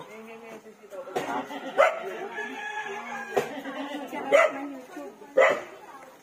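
A dog barking about four times, short barks roughly a second apart starting about two seconds in, over faint voices.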